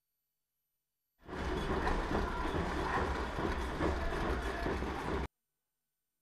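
A burst of rumbling noise, heaviest in the low end, that cuts in about a second in and cuts off suddenly some four seconds later.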